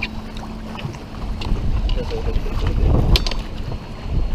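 Wind buffeting the microphone, a steady low rumble, with a faint steady hum under it and a few light clicks about a second and a half in and near three seconds in.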